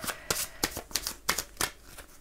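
A deck of oracle cards being shuffled by hand, a quick run of crisp card snaps, about four a second.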